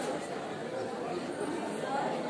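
Indistinct chatter of a small group of people talking over one another in a hall.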